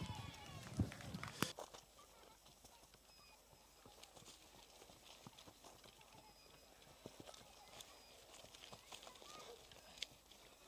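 Faint footsteps and rustling of orienteering runners moving over dry heather and forest ground past a control. There is a short voice and a sharp click in the first second and a half, then only soft, uneven steps.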